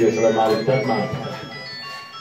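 A simple electronic melody of short, high, pure notes plays over a man's voice through a microphone. The voice tails off after about a second, leaving the tune.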